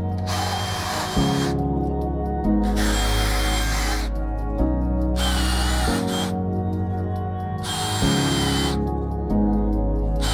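Cordless drill boring holes into a wooden post in four bursts of about a second each, its motor whining under load, over background music.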